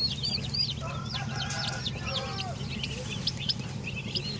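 A brood of turkey poults and ducklings peeping: many short, high chirps that rise and fall in pitch, several a second, over a steady low hum.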